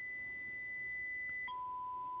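AM test tone demodulated by an Icom IC-7300 receiver: a steady high 2000 Hz tone from the signal generator's modulation that drops suddenly an octave to a 1000 Hz tone about one and a half seconds in, as the modulation frequency is changed.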